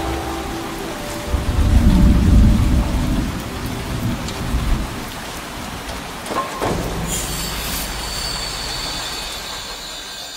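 As the song's music ends, a low rumble swells and slowly fades, like distant thunder. About seven seconds in, a steady rain-like hiss takes over until the track cuts off.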